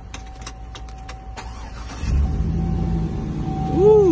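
A 2005 Chevy SSR's LS2 V8 cold-starting: a few clicks, then about halfway through the engine catches and runs with a deep, steady rumble through the dual exhaust.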